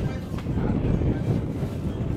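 Uneven low rumble of wind buffeting an outdoor camera microphone, with faint distant voices.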